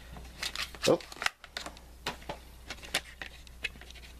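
Handling of a plastic DVD case and its paper guide insert: scattered light clicks and rustles as the booklet is taken out, with a short exclamation of 'oh' about a second in.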